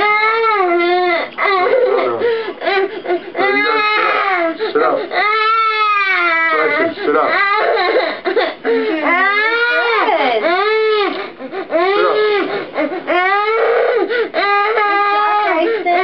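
Young boy crying hard in distress: a near-continuous run of loud wails, each rising and falling in pitch, broken by short catches of breath.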